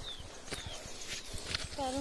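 Footsteps and rustle of someone walking up a hillside trail, a series of light uneven scuffs and knocks, with a couple of faint high chirps; a woman's voice begins near the end.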